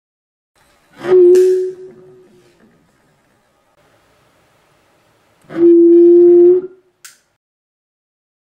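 Alcohol vapour igniting in a glass bottle, the 'barking dog' effect, heard twice. Each is a sudden woof followed by a steady hum from the bottle. The first comes about a second in and fades. The second comes about five and a half seconds in, holds for about a second and stops abruptly.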